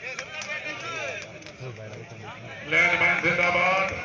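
Crowd of many voices talking and calling at once, then about three seconds in a single loud, drawn-out voice cuts in for about a second over the babble.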